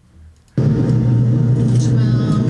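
Steady, loud low hum with a hiss over it, cutting in suddenly about half a second in: the sound of a supermarket freezer case heard close up.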